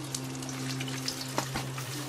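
Food frying in hot oil in a pan, a steady crackling sizzle, with one sharper knock about one and a half seconds in and a steady low hum underneath.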